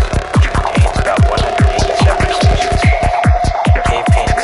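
Psytrance music: a fast, even pulse of deep kick drum and bass notes, each dropping in pitch, under a held high synth tone.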